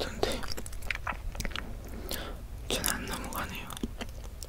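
Close-miked chewing of peeled hard-boiled egg, with many small wet mouth clicks.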